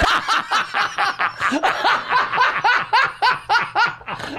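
Laughter in quick, even bursts, about four or five a second, breaking out at the punchline of a dirty joke.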